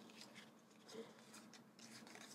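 Near silence, with faint rustles of paper and vellum ephemera pieces being handled and pulled apart, one slightly louder about a second in.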